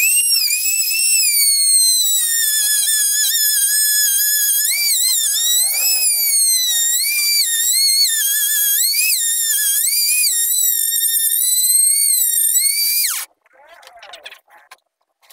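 Compact trim router running at full speed while cutting through MDF: a loud high whine that dips and rises in pitch as it cuts, then winds down with a falling pitch and stops near the end.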